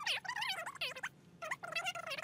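A woman's speaking voice played back fast-forward: a high-pitched, chipmunk-like chattering gabble in which no words can be made out.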